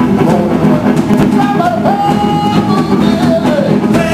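A live blues band playing: hollow-body electric guitar, electric bass and drum kit, with held lead notes that bend in pitch over a steady groove.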